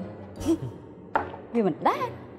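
A person's short, breathy vocal sounds between lines of dialogue, ending in a brief interjection whose pitch drops and then rises.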